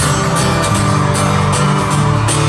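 Amplified acoustic guitar strummed in a steady rhythm through a concert sound system, between sung lines of a pop song.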